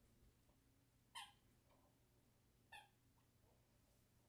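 Near silence: room tone, with two faint, brief sounds, one about a second in and another about a second and a half later.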